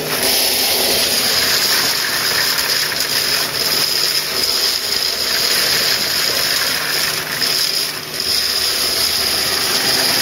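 Pressure-washer-driven venturi pump jetting water and pea gravel out of a pipe against a mesh screen: a loud, steady rushing hiss with the gravel pattering on the mesh, over the pressure washer's running hum. The rush comes on suddenly at the start and dips briefly near the end.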